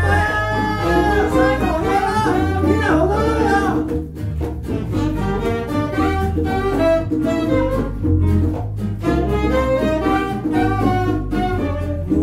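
Live band music: a woman singing over saxophones, guitar and electric bass. The gliding melody lines give way about four seconds in to a busier, rhythmic passage.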